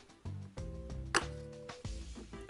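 Soft background music with held chords, and one sharp click a little over a second in as the upper burr of a Breville Smart Grinder Pro burr coffee grinder is unlocked and lifted out.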